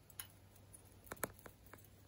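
A bauble being hung on a Christmas tree branch: a few faint clicks and light taps, with two close together a little past a second in.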